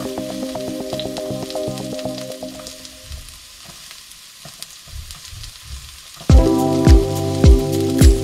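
Diced onion sizzling and crackling in hot oil in a frying pan, with a spatula scraping more onion in. Background music plays over it, thinning out in the middle and coming back loud with a heavy beat about six seconds in.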